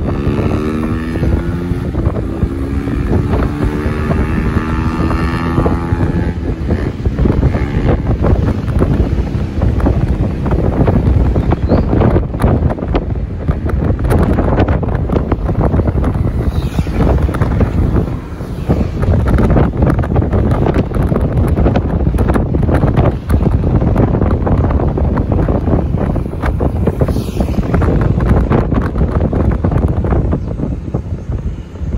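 Wind buffeting the microphone over the road noise of a moving vehicle. In the first six seconds a pitched engine drone with several tones rises slowly, then fades into the wind.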